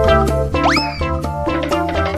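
Bouncy children's background music, with a quick rising pitch glide, like a cartoon boing, about half a second in.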